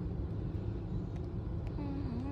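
Steady low rumble of a running car heard from inside the cabin, with a few faint ticks. A faint voice begins just before the end.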